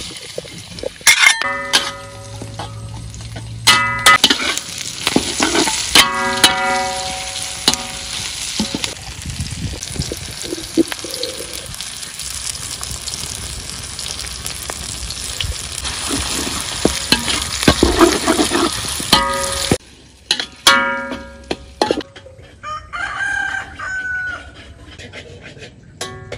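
Chopped garlic, shallots and herbs sizzling in a hot metal wok while a metal spoon stirs and scrapes, with several short ringing tones of about a second each. The sizzling cuts off suddenly about twenty seconds in.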